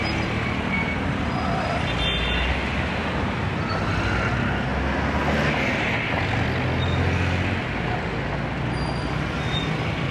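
Street traffic, mostly motorcycles passing on the road, as a steady noise. A low engine drone swells midway and drops away about three-quarters of the way through.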